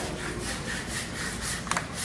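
Rubbing and scraping of a handheld phone's microphone as it is carried and handled: a string of short, irregular scrapes with a sharper knock near the end, over steady room noise.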